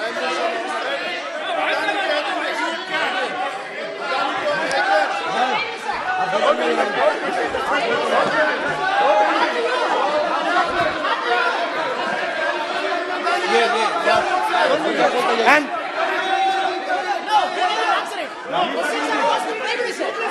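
Many members of parliament talking over one another in a large, echoing chamber: a steady din of overlapping voices with no single speaker standing out.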